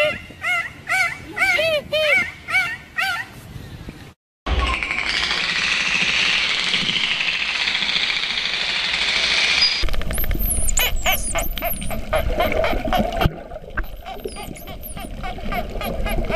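Dolphin calls: a rapid series of short rising-and-falling squeaky chirps, about three a second. After an abrupt cut comes a few seconds of dense hiss-like noise. After another cut come high sweeping whistles over fast trains of clicks.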